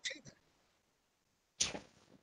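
A pause in a man's speech over a video call: the tail of a word, then the call audio drops to dead silence. About one and a half seconds in there is a short breathy hiss as he draws breath before speaking again.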